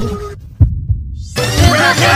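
Intro music and sound effects: low thumps under a held tone, then the high end drops out for about a second with a single thump. About a second and a half in, bright music returns with falling pitch sweeps.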